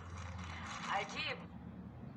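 Brief, faint voice from the television's speaker as a satellite TV channel plays for a moment, over a low hum.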